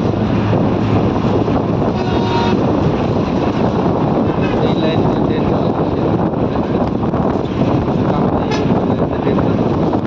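Steady, loud running noise and wind rush of a moving vehicle at speed, with a few faint brief higher sounds on top.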